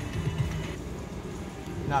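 Penny video slot machine spinning its reels on a one-line bet and stopping on no win, among casino-floor background chatter and electronic machine sounds; a man's voice comes in at the very end.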